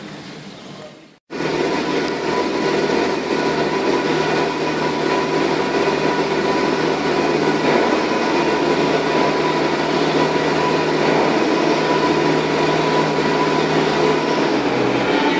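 A loud, steady machine drone with a constant hum in it, starting abruptly about a second in after a brief cut to silence.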